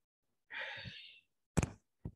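A man's breathy sigh, then a short sharp knock of handling noise on the microphone about a second and a half in, the loudest sound here.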